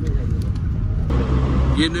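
Engine rumble and road noise heard from inside a moving bus's cabin, growing louder and hissier about a second in.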